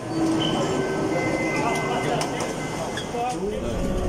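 Crowd chatter and luggage clatter inside a crowded airport people-mover train car, with a steady electric whine from the train during the first couple of seconds.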